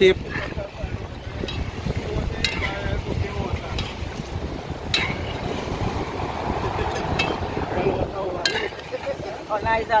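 Wood fire burning under a large aluminium pot of stewing chicken while a metal spoon stirs it. A steady low rumble of wind on the microphone runs throughout, with a few sharp clicks spread through it.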